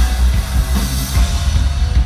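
Live rock band playing loudly, with drum kit and electric guitar.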